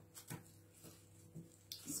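Quiet room tone with a few faint, soft handling sounds of hands pressing and shaping a lump of salt dough on a plastic sheet.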